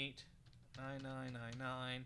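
Computer keyboard keys tapped in quick succession as digits are typed into a form, with a man's voice over the second half.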